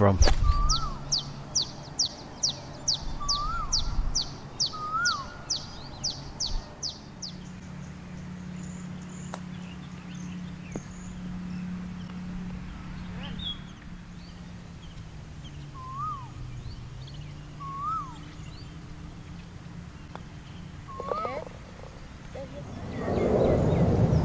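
A golf club strikes the ball at the very start. After it come bird calls: a rapid run of high, descending chirps, about three a second, for the first seven seconds, and short rising-and-falling whistled notes repeated every few seconds. A steady low hum runs beneath.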